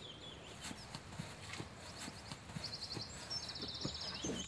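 Faint woodland sounds: scattered soft knocks and small high chirps, with a rapid high-pitched trill from about two and a half seconds in.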